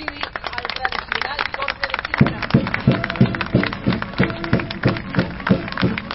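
A crowd applauding, a dense patter of hand claps. About two seconds in, music with a steady beat begins.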